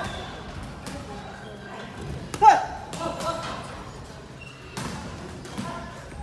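Boxing sparring: a few sharp thuds of gloved punches, with a short shouted exhale about two and a half seconds in.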